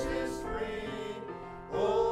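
Small mixed group of voices singing a hymn, with keyboard accompaniment. A held chord fades, and the next line starts near the end.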